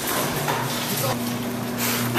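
Electric garage door opener running as a sectional garage door rolls open: a steady mechanical hum and rumble.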